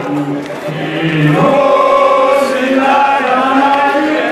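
Many men's voices chanting together in unison, holding long notes that shift in pitch. The chant dips briefly in volume at the start and swells back about a second and a half in.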